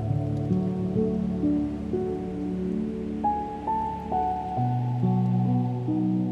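Slow, calm solo piano music: single melody notes over held low chords, with a deeper bass note coming in near the end. A faint wash of ocean surf runs underneath.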